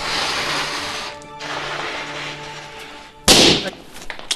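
Air being blown into a rubber balloon, then the balloon bursts with a single loud pop a little after three seconds in.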